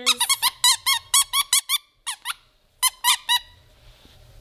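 Squeaker inside a blue plush dog toy squeezed by hand, giving a quick run of short squeaks for about two seconds. After a brief pause come three more squeaks.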